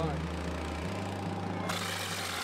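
Hiss of a hopper-type mortar sprayer's compressed-air jet blowing stucco, cutting in sharply near the end, over background music with held low bass notes.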